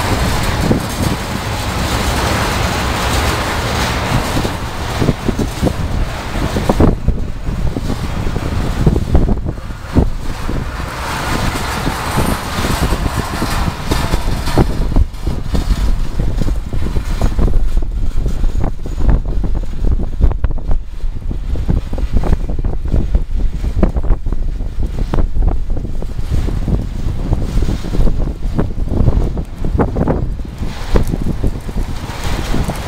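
Freight train cars rolling past on the rails: a steady rumble with irregular knocks from the wheels, mixed with gusty wind buffeting the microphone.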